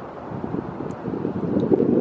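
Wind buffeting the microphone: a low, rumbling noise that grows louder near the end.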